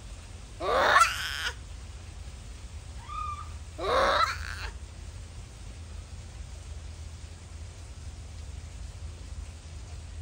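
Japanese macaque calls: two loud, wavering cries about three seconds apart, a fainter short call just before the second, then quiet apart from a low background rumble.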